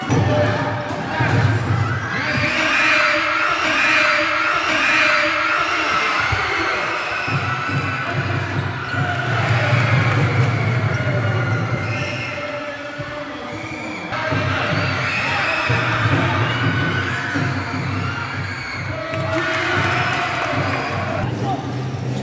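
Game sounds of a basketball being bounced on an indoor court, under the continuous shouting and calling of players and spectators in a gymnasium.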